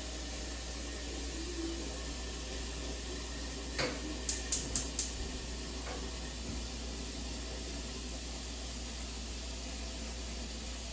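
Kitchen faucet running into a sink in a steady hiss, with a quick run of four light clinks about four to five seconds in as dishes are handled in the sink.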